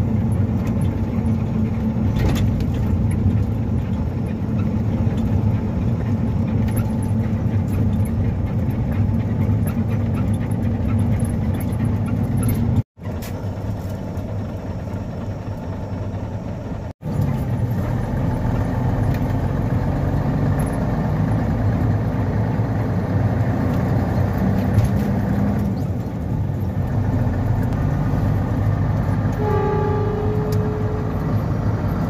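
Cab interior of a Daewoo goods truck on the move: the diesel engine running steadily at road speed with tyre and road noise. The sound cuts out briefly twice, about 13 and 17 seconds in.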